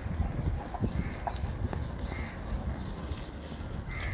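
Bicycle rolling over a rough dirt lane: a low, uneven rumble from the tyres and frame with light irregular knocks and rattles. A few faint short high chirps are also heard.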